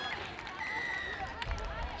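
Faint open-air sports-field ambience with distant, indistinct voices. A short, thin, steady high tone sounds a little before the middle, and a low rumble rises near the end.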